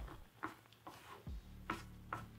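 Wooden chopsticks stirring noodles in a saucepan, giving soft light taps against the pot about two to three times a second.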